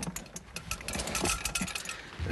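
A rapid, irregular clatter of small clicks and rattles: handling noise as the Torah ark's curtain is pulled aside and the scrolls are uncovered.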